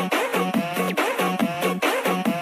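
Budots electronic dance remix: a fast, steady beat under repeating synth sweeps that glide up and down in pitch.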